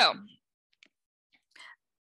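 A spoken word trailing off, then a pause in which only a few faint, short clicks and a soft breath are heard.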